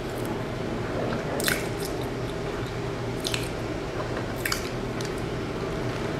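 Close-miked biting into and chewing a soft round glazed pastry, with wet mouth clicks about three times.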